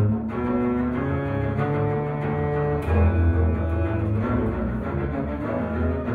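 Two double basses playing a bowed duet: long, low held notes whose pitches change every second or so, with stronger attacks at the start and about three seconds in.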